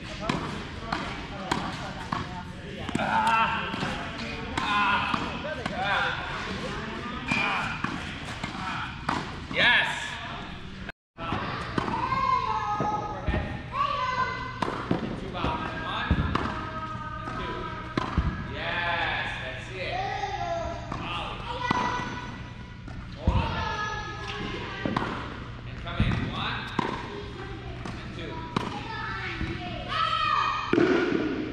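Tennis balls struck by rackets and bouncing on an indoor hard court, with a sharp hit every two or three seconds as the strokes are traded or driven.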